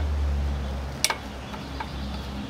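A screwdriver working the carburetor clamp screw on a Puch e50 moped engine, with one sharp metallic click about a second in and a fainter one near the end, over a low steady hum.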